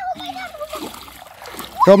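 Shallow water splashing and sloshing as hands stir and scoop through it over a pebbly bottom, with a child's voice calling out near the end.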